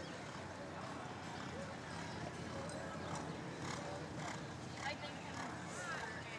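Hoofbeats of a horse cantering on a sand arena's footing, over indistinct background voices.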